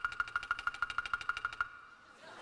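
Rapid, even clicking, about ten clicks a second, each click carrying a high ringing tone. It stops shortly before the end.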